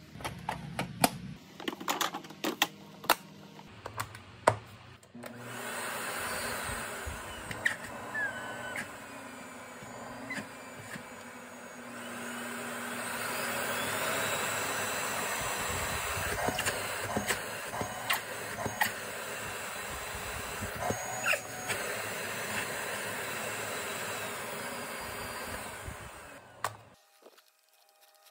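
Plastic clicks and knocks as the vacuum cleaner's top cover is snapped shut. About five seconds in, the Zelmer Solaris ZVC502HQ vacuum cleaner's motor is switched on and runs steadily, rising in level around twelve to fourteen seconds in as the power setting is raised, then stops shortly before the end. This is a test run showing that the cleaner works again after its shorted power cable was replaced.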